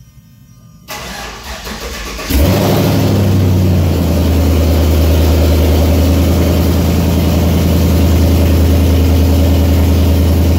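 A squarebody Chevrolet truck's engine turned over by the starter about a second in, catching just after two seconds with a brief flare, then settling into a steady, low idle.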